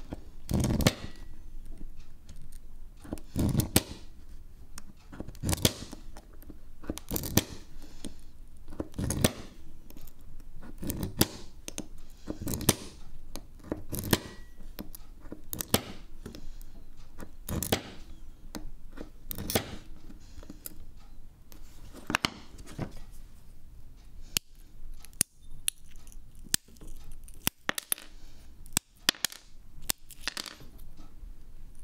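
Glass cutter scoring sheets of pink glass: short scratchy strokes about every two seconds. In the last few seconds come sharper clicks and snaps as the scored glass is broken into pieces.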